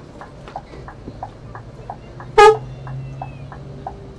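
Coach turn-signal indicator ticking in the cab, an even tick-tock alternating high and low about three times a second, over the low hum of the Scania K360iB coach's engine. About two and a half seconds in, one short, loud toot of the horn.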